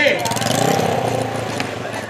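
Small drag-racing motorcycle engine running steadily with fast, even firing pulses, easing off slightly in level.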